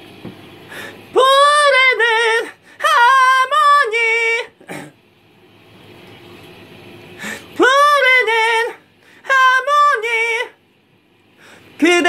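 A singer's voice, unaccompanied, trying a high phrase twice, each try two short held notes with a wavering pitch. It is a strained passage that is not coming out cleanly, which the singer puts down to fatigue and to not getting enough abdominal support.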